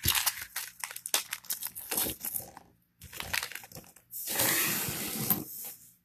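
A plastic bag crinkling and small vintage buttons clicking against each other and the table as a lot is tipped out and spread by hand. About four seconds in there is a longer, steadier crinkling.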